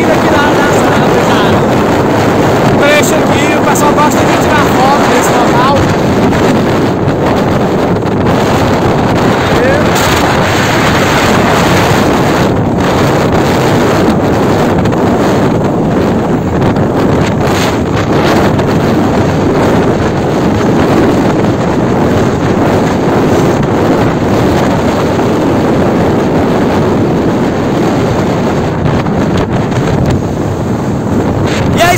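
Strong wind rushing over the microphone of a camera held above the roof of a moving Chevrolet D20 pickup, with the truck's engine and road noise running underneath. Loud and steady throughout.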